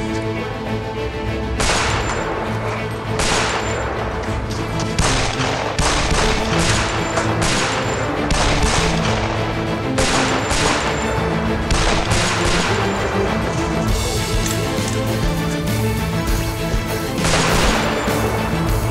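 Repeated pistol shots over a dramatic music score: more than a dozen sharp shots with echoing tails, several about half a second apart in the middle, and a last one near the end.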